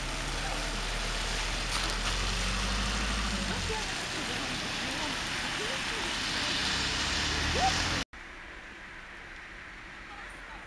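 A car passing on a wet road, with tyre hiss and a low engine hum, while people talk faintly in the background. The sound cuts off abruptly about eight seconds in, leaving a quieter outdoor background.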